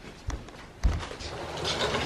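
Two dull thumps about half a second apart, then about a second of soft rustling.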